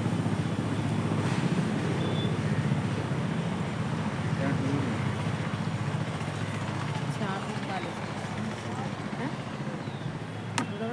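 Steady low motor-like hum throughout, with faint voices in the background.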